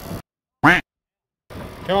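The sound cuts to dead silence, broken once by a short, loud, pitched cry that rises and falls in pitch. Boat and water noise come back about one and a half seconds in.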